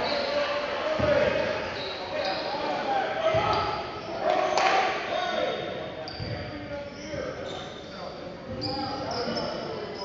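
Basketball bouncing on a hardwood gym floor amid the echoing voices of players and spectators, with short high sneaker squeaks scattered through.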